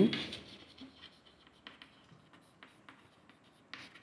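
Chalk writing on a blackboard: faint scratching with many light taps and ticks as a word is written, a few firmer taps near the end.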